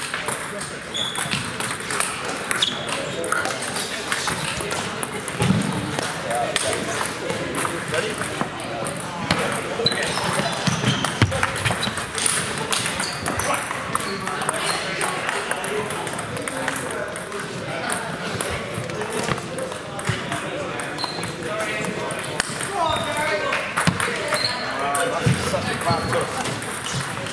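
Table tennis balls clicking sharply off bats and tables, many separate hits through the stretch, over indistinct chatter from around a large sports hall.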